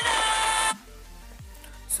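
Background music: a loud held melody stops abruptly under a second in, leaving only a quieter low beat with a couple of deep drum hits.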